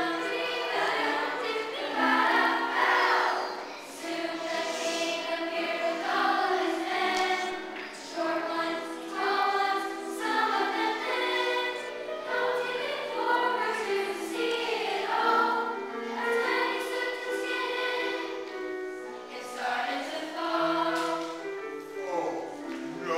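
A children's choir singing together in sustained, held notes.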